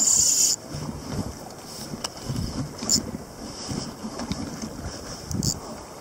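Wind buffeting the microphone and water slapping against a kayak's hull on the open ocean, with a loud rushing burst in the first half-second.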